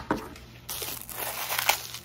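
Crinkling and rustling of takeout food packaging being handled: a sharp click at the start, then a steady rustle from a bit under a second in.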